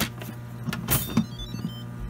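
Plastic clicks and a sharp knock as the Instant Pot's lid is handled, the loudest about a second in. Just after comes a brief, faint run of high electronic beeps stepping in pitch.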